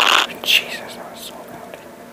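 A loud, harsh, noisy sound from the played-back video cuts off suddenly a quarter of a second in. A short falling blip follows, then faint whispering.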